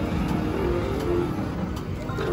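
Bally Bonus Times three-reel slot machine spinning its reels, with a run of short electronic tones. Sharp clicks about a second in and near the end as the reels stop.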